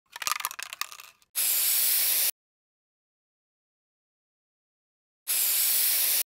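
Static-noise glitch sound effect for a logo reveal: about a second of crackling clicks, then a one-second burst of static hiss that cuts off abruptly. After about three seconds of silence, a second identical burst of static starts near the end.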